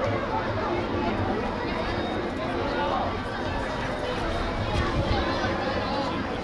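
Chatter of many people talking at once, a steady babble of overlapping voices with no single clear speaker.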